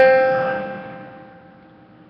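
A held note on a pitched instrument, struck just before, rings out and fades away over about a second and a half, the last note of a short melody phrase.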